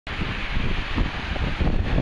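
Wind buffeting the microphone: a gusty, uneven low rumble.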